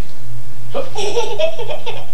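Toddler laughing, a burst of giggles that starts just under a second in and goes on in short pulses.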